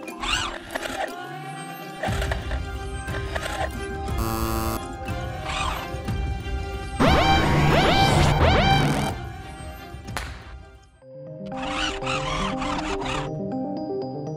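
Film score music layered with sci-fi sound effects. A deep rumble comes in about two seconds in, and a loud burst of repeated rising sweeps follows at around seven to nine seconds. The music carries on alone near the end.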